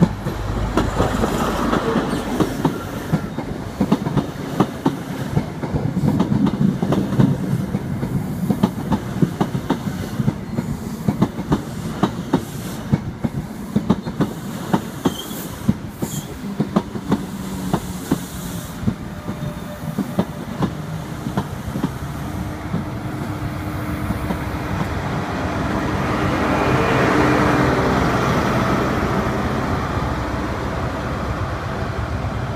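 High Speed Train with Class 43 diesel power cars running along the platform. Its coach wheels clatter over the rail joints in a long run of sharp clicks, then the rear power car's diesel engine passes close with a steady hum, loudest near the end.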